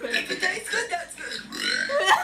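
A person burping, with voices over it.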